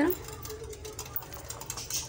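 Wire whisk beating yogurt in a glass bowl: rapid, steady clicking of the wires against the glass.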